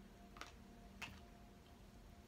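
Near silence: room tone with a faint steady hum, broken by two faint clicks, the first about half a second in and the second about a second in.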